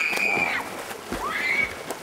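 A shrill, drawn-out cry held on one high pitch that falls away about half a second in. A second, shorter cry rises and breaks off about a second later.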